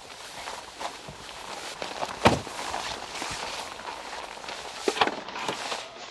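Footsteps on packed snow with scattered knocks and rustles from handling gear, and one sharp thump about two seconds in.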